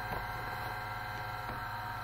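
Steady electrical hum made up of several steady tones, with a faint tick or two.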